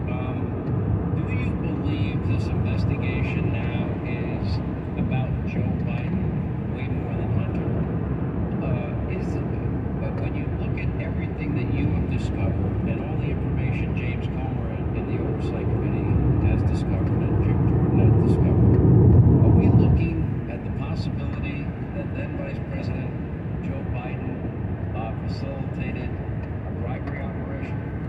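Steady road and tyre rumble inside a car cruising on a highway, with a talk-radio voice faintly under it. The rumble swells for a few seconds and then drops off suddenly about twenty seconds in.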